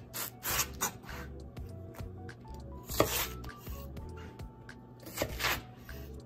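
A chef's knife slicing lengthwise through a white Japanese leek (naga-negi) on a wooden cutting board: a few short slicing strokes, with a sharp knock of the blade on the board about halfway through, over background music.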